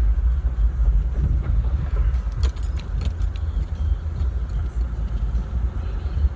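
Car cabin noise while driving: a steady low rumble from the engine and tyres. About two and a half seconds in comes a brief run of light, jingly clicks.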